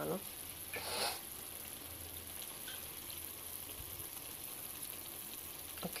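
Faint, steady sizzling of tomato-onion masala and boiled potatoes in a pan, with one brief scraping sound about a second in, over a low hum.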